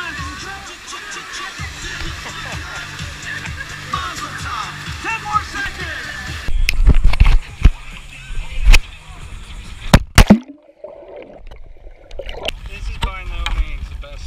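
Pop music with a steady beat plays over a crowd dancing in a pool. About six and a half seconds in, water sloshes and splashes right against the camera, with loud knocks and bumps; the loudest come near the ten-second mark, followed by a brief dull stretch before the splashing resumes.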